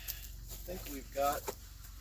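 A person's voice making two brief sounds, a little under a second and about 1.3 s in, over a steady low hum.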